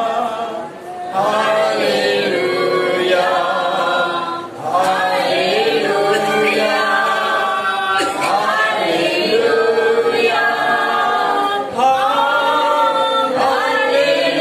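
A man singing a worship song without instruments, in loud phrases a few seconds long with short breaks between them.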